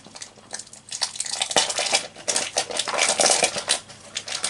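A Poké Ball tin being handled and unwrapped off camera: a dense run of scratchy rustling and small clicks, louder from about a second in until near the end.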